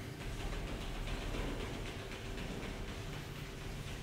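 Soft rustling of clothing and yoga mats, with fine irregular scuffs, as seated people shake out their outstretched legs, over a steady low room hum.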